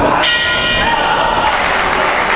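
Boxing ring bell rung once, a clang of several steady tones that rings for over a second and fades, marking the end of a round.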